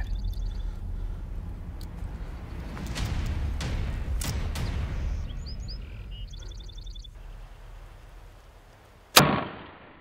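A Hoyt compound bow fired once near the end: a single sharp crack as the string is released, fading fast. Before the shot there is a low wind rumble with a few faint clicks and short runs of high chirps.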